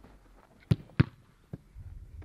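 Two sharp thuds of a football being kicked, less than half a second apart about three-quarters of a second in, then a fainter one about a second and a half in.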